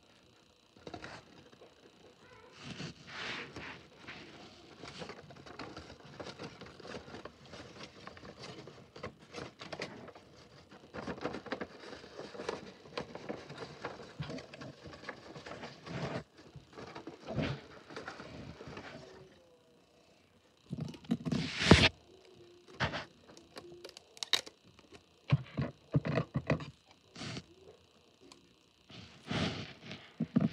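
A sheet of paper being handled and folded: irregular crinkling and rustling, then a short pause about two-thirds through, followed by sharper, louder crackles and taps.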